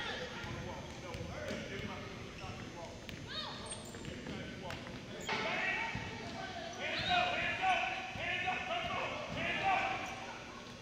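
A basketball dribbled on a hardwood gym floor, amid shouting voices in a large gym. The voices grow louder in the second half.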